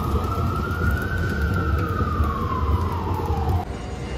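An emergency-vehicle siren wailing: one slow rise in pitch followed by a longer fall, cut off abruptly about three and a half seconds in. A low rumble of city traffic or wind lies underneath.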